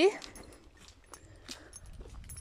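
The end of a woman's word at the very start, then quiet walking sounds: faint footsteps and a few scattered clicks and rustles on a leaf-covered forest path.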